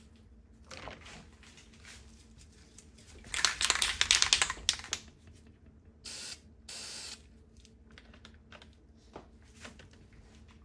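A loud spell of rapid rattling clicks lasting about a second and a half, then two short hisses of spray, each about half a second long.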